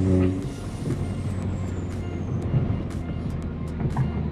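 Inside the cabin of a Kia Forte GT with its 1.6-litre turbo four-cylinder: a steady engine drone stops a moment in as the throttle is lifted. Tyre and road noise remain as the car slows, with a faint high whistle falling slowly in pitch.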